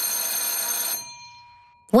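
Cartoon transition sound effect: a bright, high ringing shimmer over a noisy wash, steady for about a second and then fading away.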